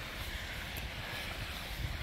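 Wind buffeting the microphone as an irregular low rumble, over a faint steady outdoor hiss.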